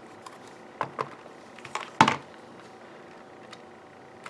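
Clear plastic CD case used as a home-made stamp positioner being handled, closed and pressed down to stamp: a few light taps and clicks, with one sharper plastic clack about two seconds in.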